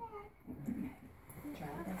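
Soft talking voices, low murmured speech, with no other distinct sound.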